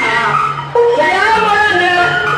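A voice singing with music, its pitch sliding up and down, with a brief dip in loudness a little before the middle.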